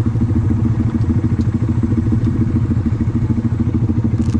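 Honda Grom's 125 cc single-cylinder engine idling steadily at a stop.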